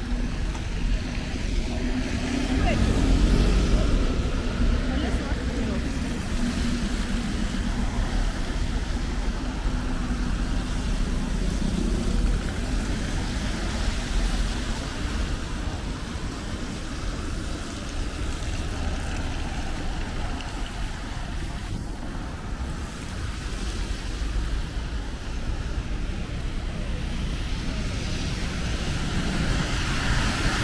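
Rainy city-street traffic: buses and cars passing on wet tarmac with a steady tyre hiss and low rumble, a bus engine humming close by and loudest about three seconds in.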